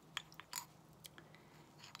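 Faint scattered clicks and scrapes of a paintbrush stirring thin paint in a glass jar, the brush tapping against the glass.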